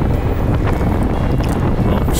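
Wind buffeting the microphone of a camera mounted on a road bike at race speed: a steady low rumble.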